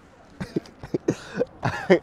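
A man laughing in short breathy bursts that grow louder and more voiced near the end.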